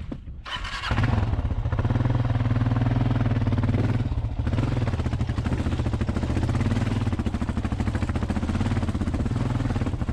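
Kawasaki KLR650's single-cylinder engine pulling under load up a rocky dirt hill climb. The throttle opens about a second in and the engine runs strongly, eases briefly around four seconds in, then pulls steadily again.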